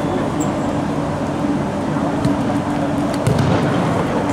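Steady, echoing indoor sports-hall noise with a constant low hum, a few light knocks, and a duller thump about three seconds in as the futsal ball is kicked.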